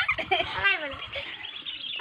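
Children laughing and giggling in high voices.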